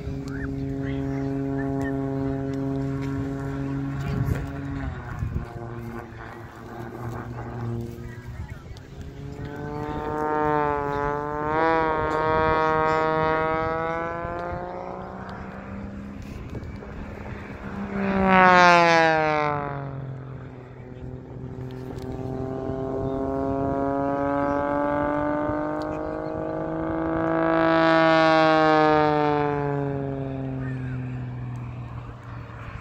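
Aerobatic display aircraft flying past overhead, the engine sound swelling and sweeping in pitch as each one passes. The loudest pass comes about two-thirds of the way through, with another rise near the end.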